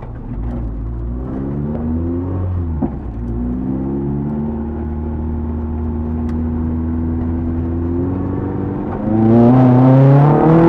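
Classic Mini's A-series engine heard from inside the cabin, pulling through the gears: the engine note climbs, breaks at a gear change about three seconds in, then climbs again. Near the end it gets sharply louder and higher under hard acceleration.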